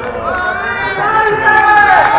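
A voice in long, drawn-out pitched notes that grow louder about a second in.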